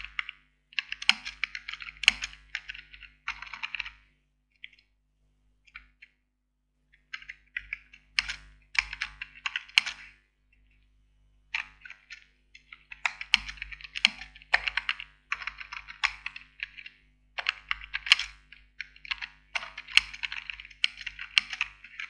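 Typing on a computer keyboard: bursts of quick keystrokes with pauses of a second or two between them.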